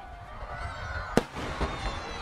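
Aerial fireworks going off over a lake: one sharp bang about a second in, followed by a few fainter pops.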